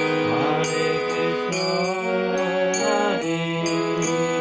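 Harmonium played by hand with the bellows pumped: a slow melody of held notes that change about once a second.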